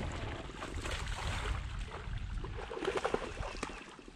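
A hooked bowfin (mudfish) splashing in the water as it is played to the side of the boat, with wind rumbling on the microphone.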